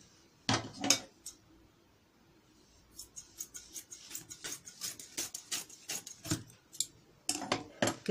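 Scissors snipping through four layers of folded cloth. Two sharp clicks come about half a second in; from about three seconds in there is a steady run of quick snips, about four or five a second, that stops near the end.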